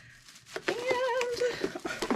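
A woman's long, wordless "aww" of delight, starting about half a second in, its pitch wavering as it is held.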